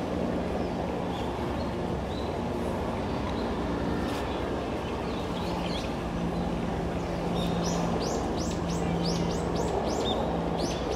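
A bird calling a quick run of sharp, falling chirps, about three a second, starting a few seconds before the end, over a steady low background hum.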